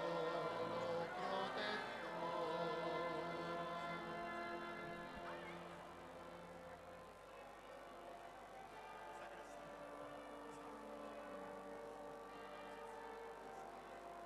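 Choral church music of sustained, held chords, wavering in the first couple of seconds and then settling into steadier, quieter chords from about halfway through.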